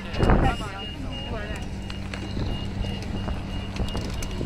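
Airport apron ambience: a steady low machine hum, with a gust of wind on the microphone shortly after the start and people talking faintly in the first second and a half.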